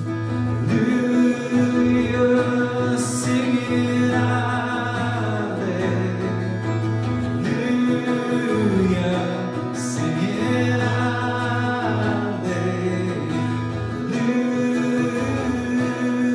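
A man sings a worship song with long held notes, accompanying himself on a strummed acoustic guitar.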